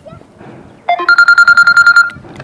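Mobile phone ringing: a loud electronic ring tone, one high tone pulsing rapidly in a fast trill, starting about a second in.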